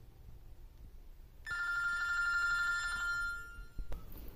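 A single bright bell-like chime that rings out suddenly about a second and a half in and dies away over about two seconds, its higher notes fading first. A short click comes near the end.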